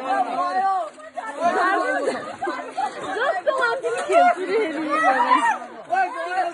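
A group of voices talking and calling out over one another, loud and overlapping.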